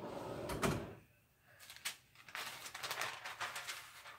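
Lower platen of a draw-style heat press sliding out with a short metallic scrape, then a click, followed by rustling of the paper sheet covering the pressed ornament as it is handled.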